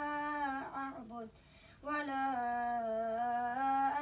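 A single voice chanting Quran recitation in melodic tajweed, holding long drawn-out notes, with a short breath pause about a second and a half in.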